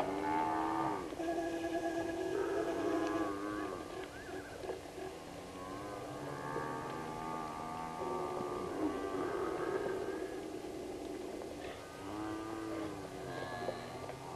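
A herd of African (Cape) buffalo lowing, with many drawn-out, moo-like calls overlapping and rising and falling in pitch. The calls are densest in the first few seconds, come again after a short lull, and a last call arrives near the end.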